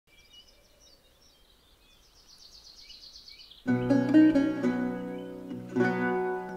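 Faint birdsong with chirps and trills. A little over halfway in, a lute and a viol break in together, playing an early-music tune of plucked chords under a bowed melody.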